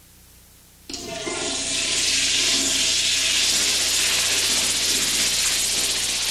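Toilet flushing: after a second of faint hiss, a sudden rush of water starts and keeps running steadily.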